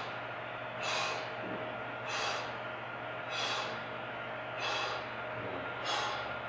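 A man breathing hard from the exertion of a high-intensity leg-press set, with forceful, evenly spaced breaths about one every 1.2 seconds, five in all.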